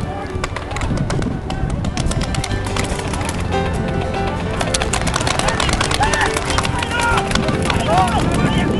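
Many paintball markers firing in rapid, overlapping volleys, a dense run of sharp pops that starts about half a second in and continues.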